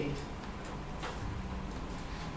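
A pause in speech: steady room noise with a single faint click about a second in.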